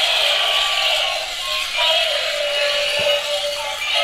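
Several battery-operated toys playing tinny electronic tunes over one another from small built-in speakers, thin and without any bass.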